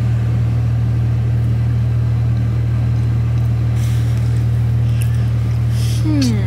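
Steady low hum of a car heard from inside the cabin, unchanging throughout, with a couple of faint brief rustles about four seconds in and near the end.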